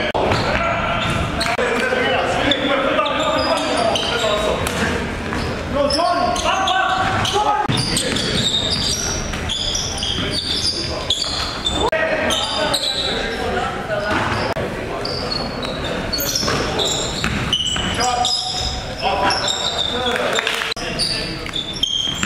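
A basketball being dribbled and bounced on a gym floor during a game, with indistinct voices of players calling out, all echoing in a large hall.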